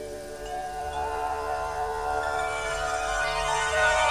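Instrumental opening of a Hindi devotional song (bhajan): layered sustained notes come in one after another and build steadily louder before the singing begins.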